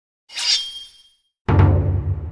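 Outro logo sound-effect sting: a bright, glassy ringing burst just after the start that fades within a second, then a sudden deep hit about one and a half seconds in that rings on and decays.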